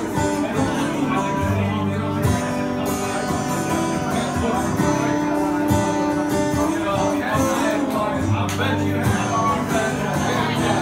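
Acoustic guitar strummed in a steady rhythm, chords ringing over shifting bass notes.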